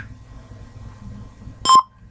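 A single short electronic beep from Google Image Search's Atari Breakout game about one and a half seconds in, as the ball bounces near the paddle, over a faint low background hum.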